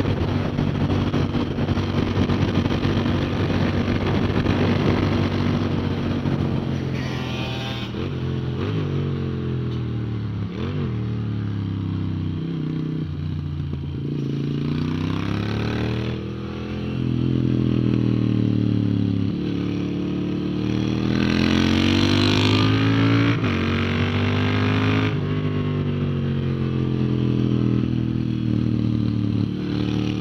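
Moto Guzzi V7 Stone's air-cooled V-twin ridden hard on track, heard from a camera on the bike. The revs climb and drop again and again through gear changes and braking for corners.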